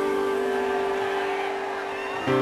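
A sustained keyboard chord held steady by a live band, fading slightly toward the end.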